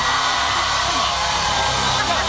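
Studio audience cheering and applauding, an even wash of noise, with a laugh about half a second in.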